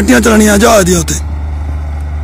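A man speaks for about a second. Under his voice and after it runs the steady low drone of a self-propelled high-clearance crop sprayer's engine as it drives along spraying.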